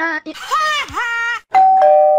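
A high-pitched, cartoonish voice with sliding pitch, then about a second and a half in, a two-note elevator chime, a high note followed by a lower one.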